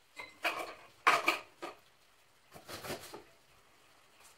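Three short bursts of clinking and clattering from small hard objects being handled on a work table, each a quick cluster of knocks about a second apart.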